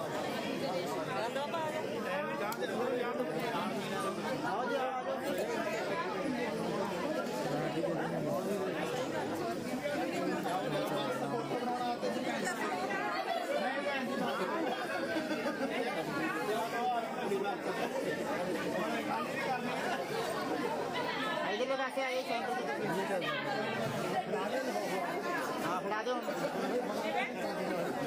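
Many people talking at once: a steady babble of crowd chatter with no single voice standing out.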